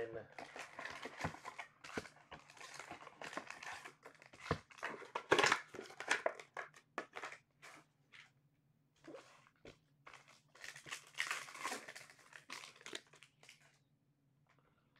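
Trading-card pack wrappers crinkling and tearing as packs are ripped open by hand, in irregular bursts of rustling with a lull about eight seconds in.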